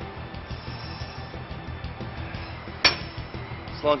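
Background music with a steady beat; about three seconds in, a single sharp metallic clank as the cable machine's weight stack is set down at the end of the set.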